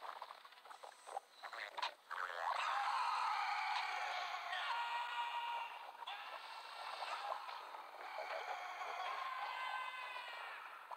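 Animated film soundtrack without dialogue: a few sharp hits in the first two seconds, then a dense mix of sound effects and sustained synthesizer-like tones that shift every second or so. The sound is thin, with no bass.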